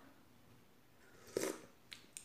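A short slurp as broth is sipped from a spoon, a little past halfway through after a quiet stretch, followed by a faint click near the end.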